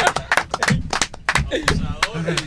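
Two or more people clapping their hands in uneven, scattered claps, about ten in all, mixed with brief voices.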